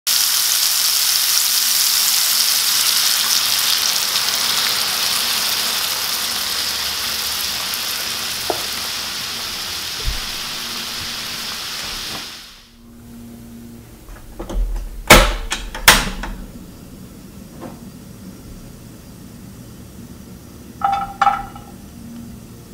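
Food sizzling in a frying pan: a loud, steady hiss that slowly fades and cuts off about halfway through. After a pause come two sharp clicks about a second apart. Near the end there is a short clatter as sliced garlic is tipped from a bowl into the pan.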